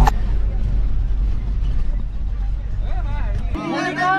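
Steady low engine rumble and cabin noise inside a bus, with passengers' voices in the background. The rumble cuts off abruptly about three and a half seconds in.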